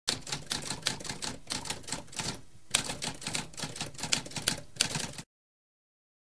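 Typewriter keys being struck in a rapid run of clicks, with a short pause about halfway through, cutting off suddenly near the end.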